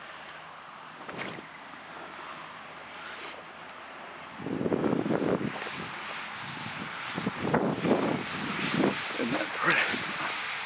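Wind buffeting the microphone outdoors, light at first and then in heavier, uneven gusts from about four seconds in.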